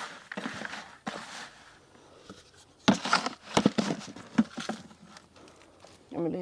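Cattle feed rustling and rattling in a bucket as it is scooped and handled, in two bursts of irregular scraping and clicks, the second louder, about three seconds in.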